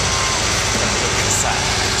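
A tour bus's engine idling, a steady rumble with a hiss over it, and faint voices in the background.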